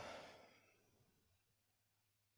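The tail of a sigh: a breathy exhale fading out within the first half second, then near silence.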